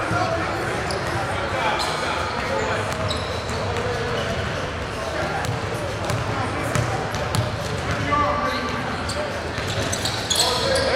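Basketballs bouncing on a hardwood gym floor amid a steady background murmur of many voices, echoing in a large hall.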